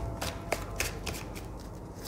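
Tarot deck being shuffled by hand, a series of short, crisp card strokes about three or four a second.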